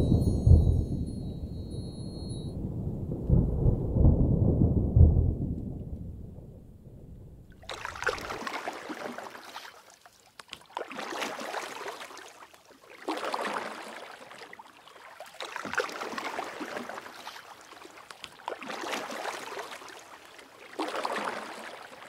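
Deep rolling rumble of distant thunder for the first several seconds. Then small waves wash onto a shore in repeated swells, about one every two and a half seconds.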